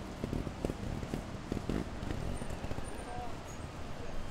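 Faint live sound from a motorcycle trials section in woodland: a low rumble and a steady hiss, with scattered small knocks and clicks.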